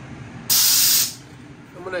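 A short, loud hiss, like a burst of air or spray, lasting about half a second and starting and stopping abruptly about half a second in.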